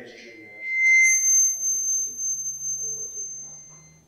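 Public-address microphone feedback: a steady high-pitched squeal that swells to a loud peak about a second in, then gives way to a thinner, higher ring that fades away.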